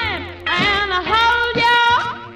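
A 1954 rhythm and blues record playing from a 78 rpm Mercury disc: a sung or blown melody line over a steady band. A short falling note gives way, about half a second in, to a long held note.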